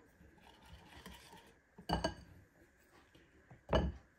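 Fine-mesh metal sieve of flour tapped and shaken over a glass mixing bowl: two sharp knocks with a short clinking ring, about two seconds apart, with a faint rustle of sifting flour between.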